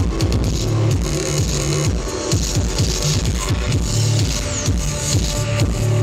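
Loud electronic dance music played live through a concert sound system, with heavy bass and a steady beat.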